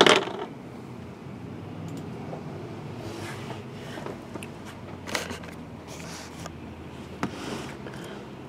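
A boxed card product set down on a tabletop with a sharp knock right at the start, then low background noise with a couple of faint handling clicks.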